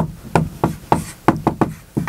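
Dry-erase marker writing on a whiteboard: about ten short, sharp, irregular taps and strokes of the marker tip against the board as letters are formed.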